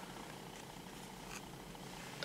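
Quiet room tone with the faint handling of trading cards, a soft slide or tap about a second and a half in.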